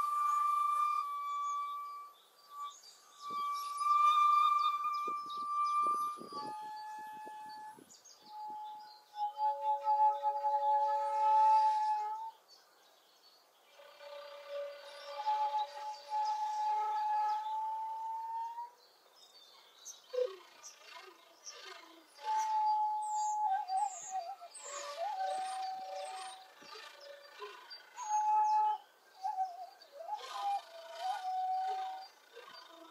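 Two shakuhachi bamboo flutes improvising in long held notes, at times sounding together a few notes apart, with short breaks between phrases. From about two-thirds of the way in, many birds chirp quickly over the flutes.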